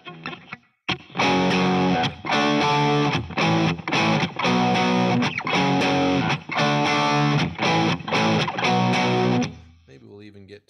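Distorted electric guitar strumming power chords in a steady rhythm, with brief silent gaps between the chord changes where the strings are muted, giving a tight, choppy sound. A few light strums come first, then the loud chords start about a second in and stop just before the end.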